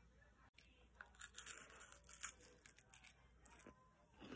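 Faint crinkling and small clicks over near silence as a chocolate is handled and lifted from its clear plastic wrapping. The sounds are scattered from about a second in until near the end.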